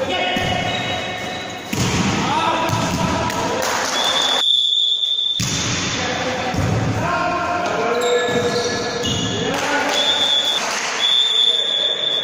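Players' voices calling out in a large sports hall between volleyball rallies, with a few ball bounces. A referee's whistle blows a long steady blast about four seconds in, then two short blasts near the end, signalling the next serve.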